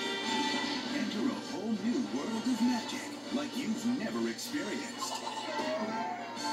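Animated movie trailer soundtrack heard through a television's speakers: music with cartoon character voices, and a few sharp hits near the end.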